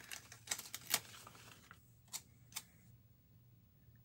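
A few faint paper clicks and rustles as a sticker is handled and pressed onto a planner page, with two last light clicks a little after two seconds in.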